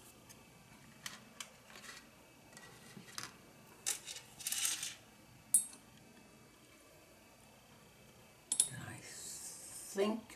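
Scattered faint clicks and taps of watercolour painting tools, with a short rustle a little before halfway as the spiral-bound watercolour journal is shifted on the table.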